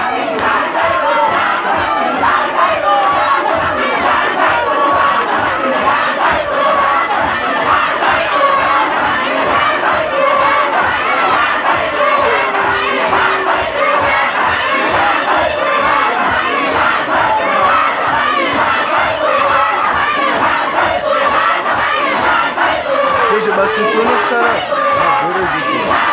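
Many men's voices chanting loudly together in a rhythmic Sufi dhikr (dahira), with a steady pulse running under the massed voices.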